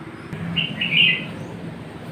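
A bird chirping briefly: a short run of high chirps about half a second in, over a low steady background hum.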